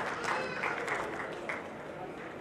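Audience applause dying away, the clapping thinning and fading out, with some voices in the hall.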